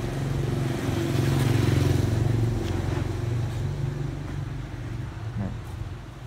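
A motor vehicle engine running, its low hum swelling to its loudest a second or two in and then slowly fading, as a vehicle going past does.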